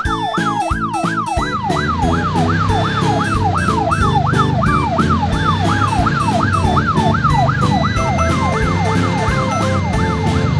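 Police car siren sweeping rapidly up and down in pitch, nearly three sweeps a second, over upbeat background music with a steady beat.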